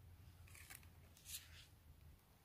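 Near silence, broken by two faint, brief crisp rustles about half a second and a little over a second in.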